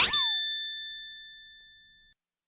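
Bright 'ding' chime sound effect marking a point scored on an on-screen scoreboard. It strikes sharply with a short falling sweep, then one high bell-like tone rings and fades away over about two seconds.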